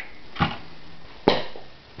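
Two knocks in a small room. The first is soft and dull, and about a second later a sharper, louder one dies away quickly.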